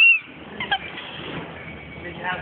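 A person's brief high-pitched squeal, dropping slightly in pitch, with a fainter short vocal sound under a second later, over steady background hubbub.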